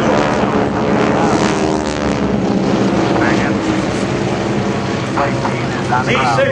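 A mass formation of piston-engine propeller aircraft flying overhead: a loud, steady drone of many engines together, their pitches overlapping and slowly drifting.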